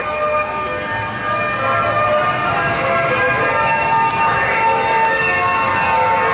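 A loud, sustained chord of many steady held tones, with a few of the notes changing about three to four seconds in, like droning ambient music.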